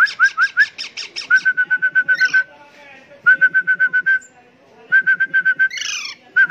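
A few short rising whistle notes, then young Alexandrine parakeets begging for food with rapid repeated calls, about nine a second, in three bursts of about a second each with short pauses between.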